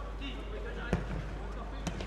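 Two sharp thuds of a football being kicked, about a second apart, over faint shouts and the hum of a sparse stadium crowd.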